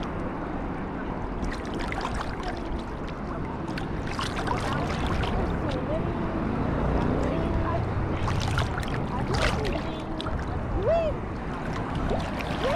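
Sea water sloshing and slapping around a camera held at the surface while swimming, with a steady low rumble and several short splashes. Faint voices call out in the background during the second half.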